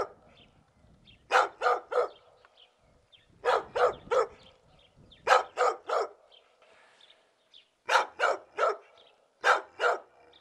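A dog barking in runs of three quick barks, every two seconds or so.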